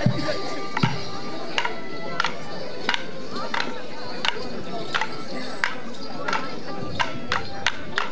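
Morris dancers' long wooden staves clacking together in time, about once every two-thirds of a second and coming closer together near the end, over a dance tune.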